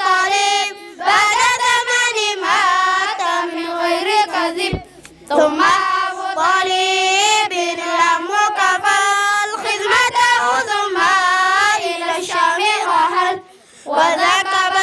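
A group of children chanting an Arabic religious poem in unison, in a melodic sung recitation into a microphone. Two short breaks between lines come about five seconds in and near the end.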